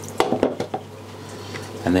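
Hard plastic knocks as the Fluval FX2 canister filter's lid is set down and the filter housing handled: two sharp knocks about a quarter-second apart near the start, then a few lighter clicks.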